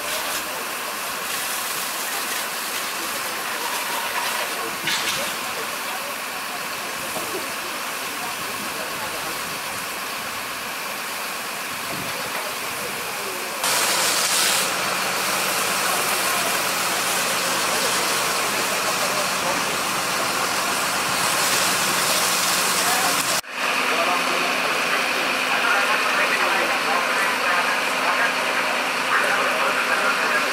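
Fire-ground noise: a fire engine's engine running steadily to drive its pump, with hissing from water spray and steam on the burning roof. A steady low hum and louder hiss come in about halfway through.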